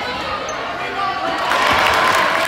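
A basketball bouncing on a gym floor amid a crowd of voices, the crowd noise swelling in the last half second.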